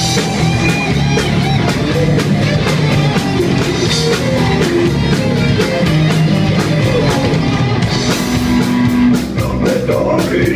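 Live rock band playing loudly: electric guitar, bass guitar and drum kit.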